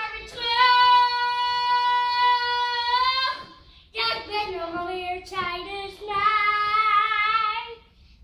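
A young girl singing into a microphone: one long steady note held for about three seconds, then, after a short break, two shorter sung phrases.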